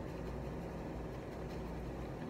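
Steady low room hum, with a few faint soft ticks as a powder brush is dabbed against tissue paper.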